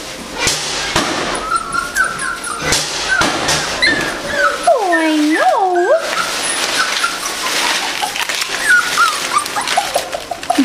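Poodle puppy whimpering: many short, high whines, with two longer whines that rise and fall about five seconds in. Shredded-paper bedding rustles underneath.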